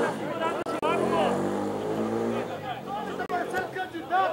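Voices calling out across a football pitch. A vehicle engine hums steadily underneath from about half a second in until about two and a half seconds in.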